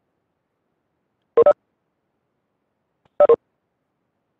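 Two short two-note electronic notification chimes from videoconference software, about two seconds apart. The first steps up in pitch and the second steps down.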